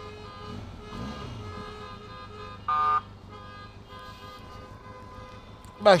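One short vehicle horn toot, about a third of a second long, a little under halfway through, over the steady low hum of traffic stopped in a jam.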